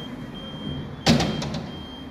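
A metal-framed sliding window knocks sharply once about a second in, with a brief rattle after it, as a hand takes hold of it. Steady street traffic noise runs underneath.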